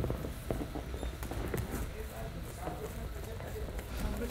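Soft, irregular footsteps and shuffling on a padded gym mat as two sparring fighters move around each other, with a few light taps.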